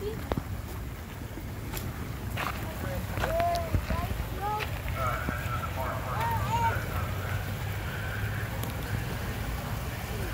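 Shallow stream rushing over rocks, a steady rush of water with a low rumble underneath. Faint voices come and go in the middle.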